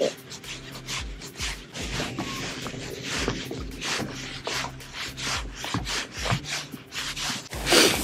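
Rubbing and scraping handling noise from a fishing rod and reel while a bass is fought and reeled in, broken by irregular knocks about two or three times a second.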